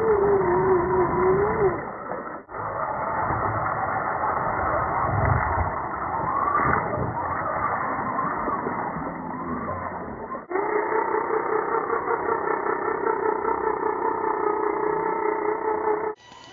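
Electric motors and gear drives of radio-controlled scale crawlers whining as they drive through mud, the pitch wavering and rising with the throttle. The sound breaks off sharply twice, about two and a half seconds in and again about ten seconds in.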